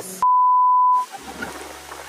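A single steady beep of about 1 kHz, lasting under a second, with all other sound cut out beneath it: an editor's censor bleep over a shouted word. After it, the noise of the waterfall and wind comes back.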